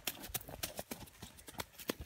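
Running footsteps crunching over dry leaves and snapping twigs on a forest floor: a quick, irregular string of sharp cracks, fairly quiet.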